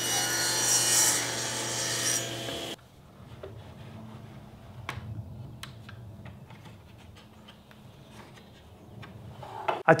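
Table saw cutting a strip of cherry, running steadily, then cut off abruptly a little under three seconds in. Afterwards there are only faint clicks and knocks of hands working at a router table fence.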